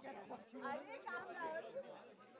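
Faint chatter of several people talking at once, off the microphone.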